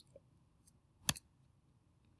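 A single sharp click about a second in, with a fainter tick right after it: the click that advances the lecture slide to its next line. Otherwise quiet room tone.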